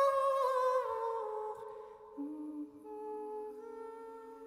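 A woman singing a long wordless note with vibrato, stepping down in pitch and fading over about two seconds. A little past halfway, a lower steady tone enters beneath it, with faint high steady tones above.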